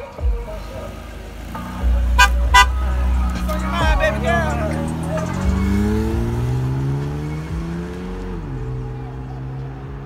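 A car's engine pulling away, its pitch rising steadily before dropping sharply near the end at a gear change, then running steady. Two short horn toots come a couple of seconds in.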